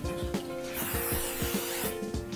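Aerosol hairspray can spraying onto hair: one hiss of about a second, starting a little before midway and stopping near the end. Background music with a steady beat plays under it.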